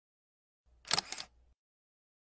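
A brief sound effect in a channel logo intro: two quick snaps about a fifth of a second apart, about a second in, with silence on either side.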